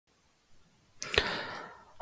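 About a second of near silence, then a sharp click with a short rush of noise that fades within a second.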